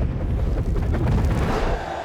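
Film sound effect of Thor spinning his hammer, Mjolnir, and launching into the air: a loud, deep rumbling whoosh that swells through the middle and eases off near the end.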